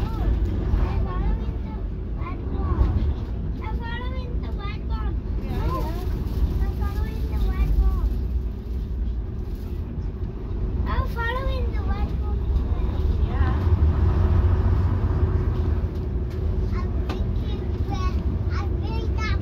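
Diesel engine and running noise of a Leyland Leopard PSU3R coach on the move, heard from inside the passenger saloon as a steady low rumble. It grows louder for a few seconds about two-thirds of the way through.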